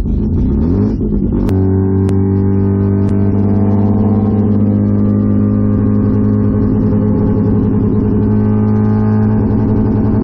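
Mazda RX-7's 13B rotary engine heard from inside the cabin, rising in pitch as the car accelerates for about a second and a half, then running steadily at cruising speed. A sharp click comes as the pitch levels off.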